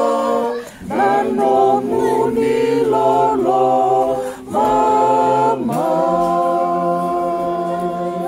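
Small group of men singing a Fijian Methodist hymn unaccompanied in part harmony, moving through sustained chords with two short breaks for breath. The last chord is held from about six seconds in.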